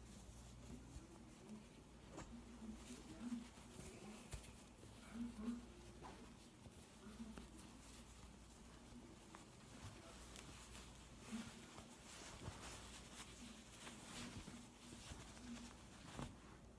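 Near silence, with faint rustling and light taps of hands and fabric as a pair of pants is pulled onto a silicone baby doll.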